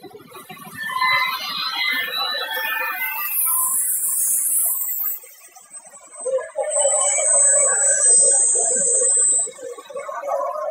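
A plastics extrusion and underwater pelletizing line running. A hiss comes in a few seconds in, and a louder stretch with a steady high whine follows in the second half.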